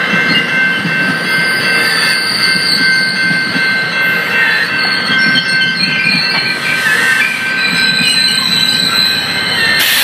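Bilevel commuter coaches rolling past close by: a steady rolling rumble with high, steady wheel squeal held over it. A single sharp knock right at the end.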